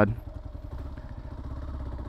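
Kawasaki KLR650 single-cylinder engine running at low revs with a steady low pulsing as the motorcycle rolls slowly through a turn.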